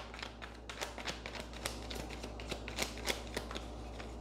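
A deck of tarot cards being shuffled by hand: a quiet, continuous run of small irregular card flicks and clicks.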